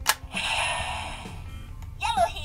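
Hasbro Lightning Collection Mighty Morphin Power Morpher toy: a click as its plates open, then its electronic sound effect through the toy's small speaker, a hissing shimmer that fades away over about a second and a half.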